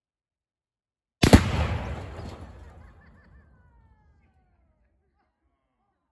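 A fridge packed with Tannerite exploding target blows up in one sharp, very loud blast about a second in, followed by a rumbling tail that dies away over about two seconds.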